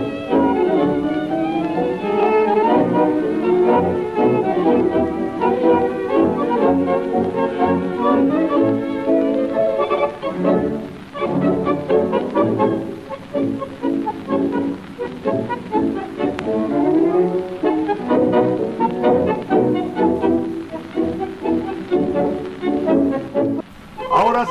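Instrumental passage of a tango played by a string-led orchestra, violins carrying the melody over bowed bass, breaking off briefly near the end.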